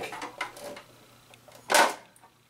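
Plastic top of a condensate pump being pried off its plastic reservoir tank with a flathead screwdriver: a few faint clicks and scrapes, then one short, loud scrape near the end as the top comes free.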